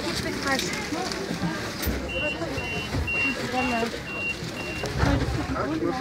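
Tram door warning beeper sounding about six short, high beeps, roughly two a second, signalling that the doors are closing, over passengers' chatter and the low rumble of the tram.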